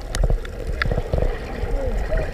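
Muffled water noise heard with the microphone under the surface of a swimming pool: bubbles from swimmers moving close by, over a low rumble, with a few sharp clicks.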